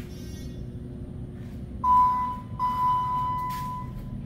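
Elevator hall arrival chime sounding two dings at the same pitch, the second ding fading away over about a second, over a steady low hum.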